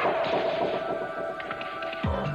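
Commercial music with a loud, noisy impact effect as a tennis ball strikes a racket; the hit starts suddenly and slowly fades over a held tone.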